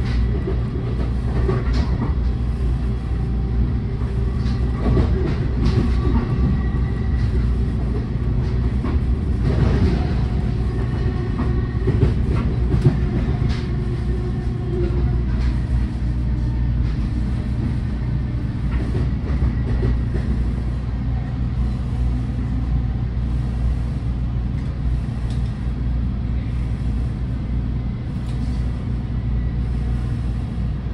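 Inside a moving commuter train car: a steady low rumble from the wheels on the rails, with frequent clicks and knocks from the track over the first dozen seconds that then settle into a smoother run.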